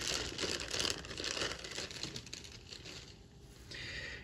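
Thin clear plastic bag crinkling and rustling as a plastic model-kit sprue is slid out of it by hand. It dies down a few seconds in.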